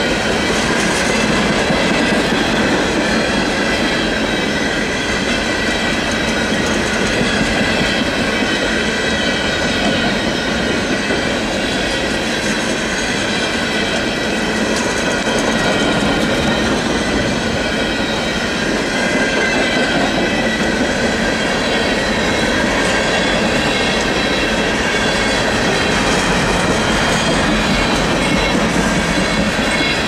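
Freight train cars loaded with containers rolling steadily past at close range, giving a continuous rumble and clatter of steel wheels on rail. Over it runs a steady, high-pitched squeal from the wheels.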